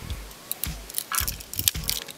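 Metal tools of a red pocket multi-tool being pried open and handled: a scatter of short, sharp clicks and small scrapes, with a quick run of clicks near the end.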